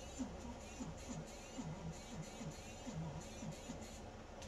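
Light scratching of a tool carving into a wax candle, under a low tune of short notes that fall in pitch, about three a second.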